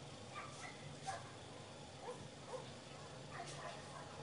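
A dog giving several short, faint barks and yips, spread over a few seconds.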